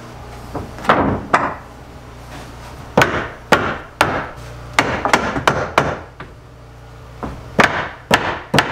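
A steel hammer striking barnwood countertop boards: about ten sharp blows in irregular bursts of two or three.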